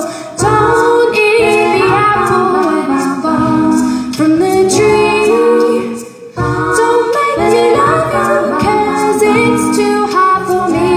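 Woman singing a cappella over layered loops of her own voice from a loop pedal, several vocal parts in harmony. The sound drops away briefly just after the start and again about six seconds in.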